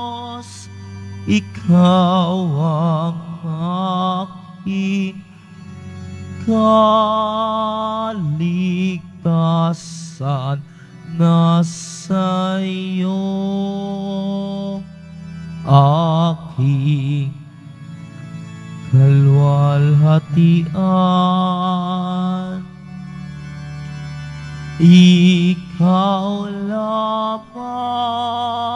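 Communion hymn: one voice sings slow phrases with a wide vibrato over long-held organ or keyboard chords.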